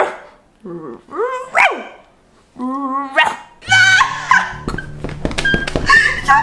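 A woman imitating a dog with her own voice, barking several short barks in the first three seconds. Then two people laugh over background music that comes in about halfway through.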